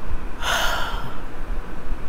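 A woman's single audible breath, a short noisy burst of air about half a second long, coming about half a second in.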